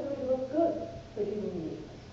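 A woman lecturing, her voice rising and falling in the hall, with a low steady hum underneath.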